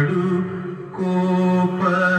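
Devotional song to Rama: a male voice holding long, steady notes, with a short break about halfway through before a new note begins.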